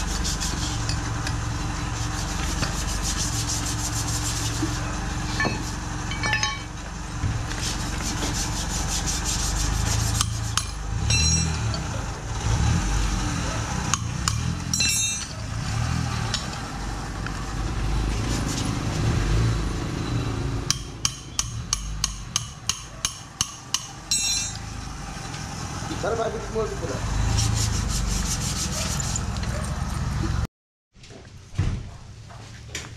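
Wrenches and metal brake-booster parts clinking, scraping and being set down on a concrete floor during a strip-down, over a steady low rumble. A few clinks ring out, and about two-thirds of the way through comes a run of about a dozen quick clicks, some three a second.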